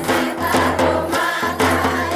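A group of Banjara women singing a traditional Holi folk song (phag) in unison, with a drum struck with a stick keeping a steady beat of about two strokes a second.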